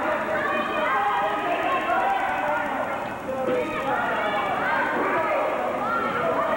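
Wrestling crowd shouting and chattering, many high-pitched voices overlapping with no clear words.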